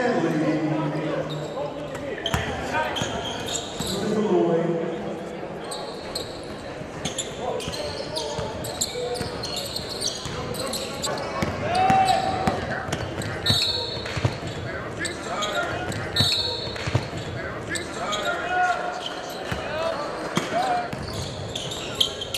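Basketball gym ambience: voices chattering in a large hall, a basketball bouncing on the court, and a few short, high squeaks of sneakers on the hardwood about two-thirds of the way through.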